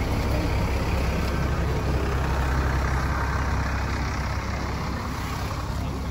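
A steady low engine rumble, like a heavy vehicle idling, with a constant wash of outdoor noise over it, easing off slightly toward the end.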